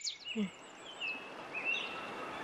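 Birds chirping, short high whistled calls and glides, over a steady background hiss that sets in suddenly.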